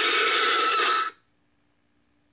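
Jumpscare screech sound effect: a loud, harsh screech with a steady high tone in it that cuts off suddenly about a second in, leaving near silence.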